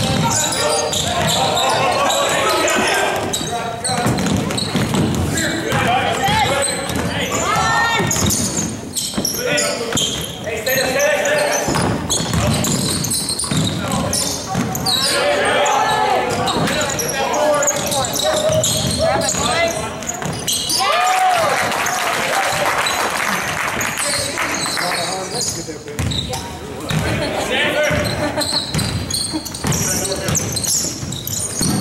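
Basketball game sounds in a gymnasium: a basketball bouncing on the hardwood floor, mixed with players' and spectators' voices, all ringing in the large hall.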